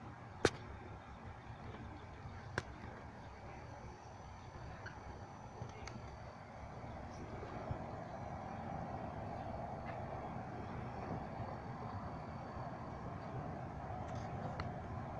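Steady low rumbling background noise with no clear tone, growing somewhat louder past the middle, and two sharp clicks, one about half a second in and another about two and a half seconds in.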